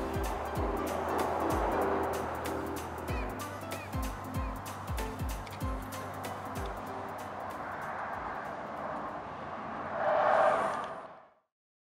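Background music with a steady beat of deep kick drums and ticking hi-hats over sustained chords, swelling briefly about ten seconds in and then cutting off to silence.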